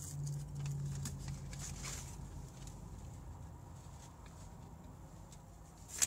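A man hums low with his mouth closed while chewing french fries; the hum fades after about two and a half seconds. Faint chewing and crinkles of a paper takeout bag continue.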